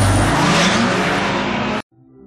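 Car engine revving hard, its pitch rising, with tyres skidding on sandy pavement as the car pulls away. The sound cuts off suddenly near the end.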